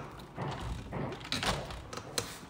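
Clunks and rattles of a window handle and frame being worked open by hand, a few irregular knocks with the loudest about one and a half seconds in.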